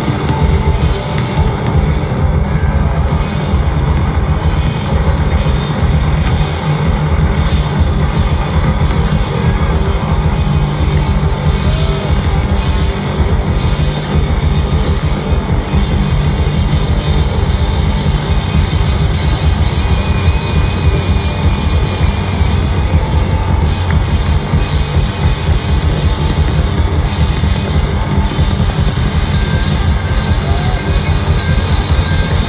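Live rock band playing loudly, with drums, guitar and a heavy, steady bass.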